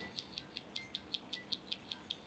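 Bird chirping: short high chirps repeating evenly, about five a second.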